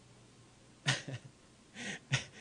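A man's short vocal noise into a handheld microphone about a second in, like a huff or brief laugh, then a breathy hiss as he draws breath to speak again.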